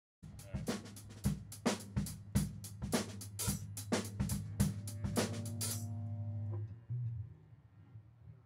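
Drum kit played loosely, with snare, bass drum and cymbal hits roughly two or three a second, over a held low electric bass note. The drums stop about six seconds in, the bass rings on briefly, and one more low bass note sounds near the end.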